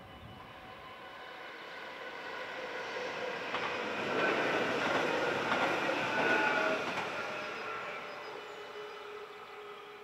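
Electric passenger train passing through a level crossing at speed: its running noise swells, is loudest for about three seconds in the middle with wheels clattering over the crossing, then fades away.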